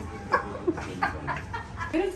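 A woman laughing hard in a run of short, high-pitched bursts, about three a second.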